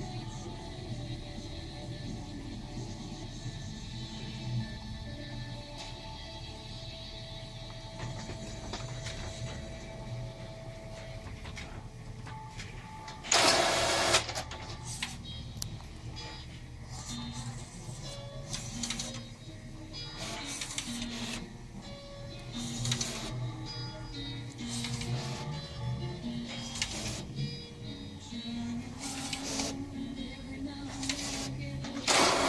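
HP DesignJet T120 plotter printing a page, working again after its main board was replaced. A loud rushing burst of about a second comes about 13 seconds in. After it the print-head carriage and paper-feed motors run in short repeated strokes with low stepping whines, while background music plays.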